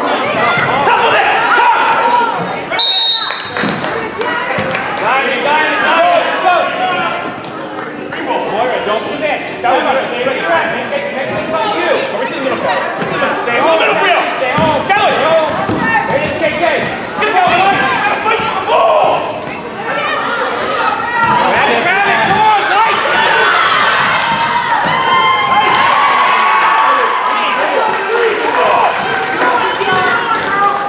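Gym sound of a girls' basketball game in play: many voices of players and spectators overlapping throughout, with a basketball bouncing on the hardwood floor, echoing in the hall. A brief high tone sounds about three seconds in.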